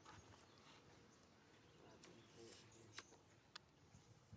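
Near silence: faint outdoor ambience with a few soft, short clicks about three seconds in.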